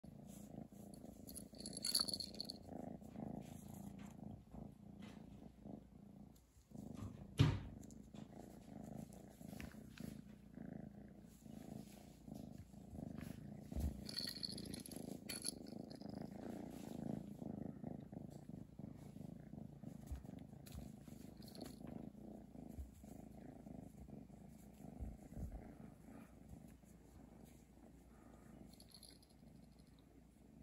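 Young orange tabby kitten purring steadily and faintly, close to the microphone. A few clicks and knocks from the plastic treat-wheel toy it is pawing break in; the loudest is a sharp knock about seven seconds in.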